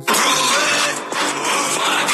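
Loud, harsh, noisy soundtrack of a video playing back, cutting in suddenly and running on steadily into electronic music.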